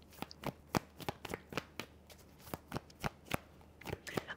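Tarot deck shuffled by hand: a quick, irregular string of short card taps and slaps, about four a second.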